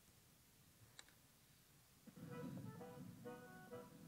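Near silence with a faint click about a second in, then a recording of a revolutionary song starts playing back over the hall's speakers about halfway through, a run of short repeated notes over a steady low part.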